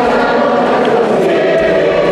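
A choir singing a liturgical hymn during mass, several voices holding long notes.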